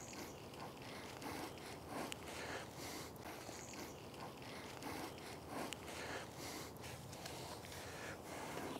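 Faint, irregular rustling and scuffing of footsteps and a shovel in garden soil and mulch as a shrub is carried on the shovel blade and set down.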